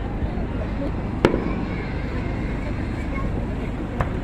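An aerial firework goes off with a single sharp bang about a second in, over a steady background of crowd murmur.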